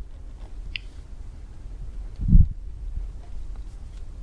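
Quiet room with a steady low hum, and one short, low, muffled thump a little past halfway.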